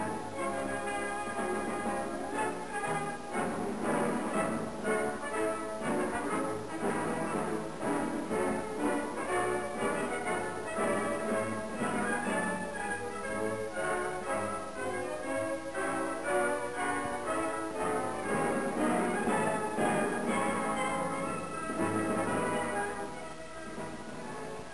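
Orchestral background music with brass, playing steadily throughout.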